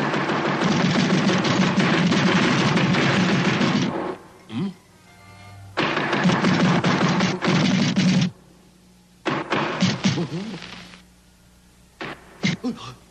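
Cartoon tommy-gun fire in rapid rattling bursts: a long one of about four seconds, another of about two seconds after a short pause, then shorter bursts near the end, with music underneath.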